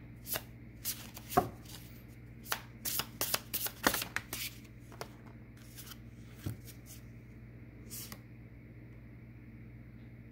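Tarot cards being shuffled and handled: a quick run of sharp card snaps and flicks over the first four or five seconds, then a few single ones spaced out.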